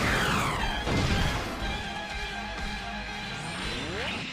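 Cartoon mecha-battle soundtrack: a falling whoosh, then a dense crash sound effect over music, with a rising sweep near the end.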